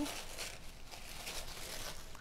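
Tissue paper rustling and crinkling as hands pull it open.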